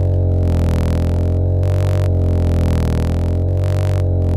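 Ableton Live's Simpler sampler looping a very short slice of a bass sample, which turns it into a steady low drone with many overtones.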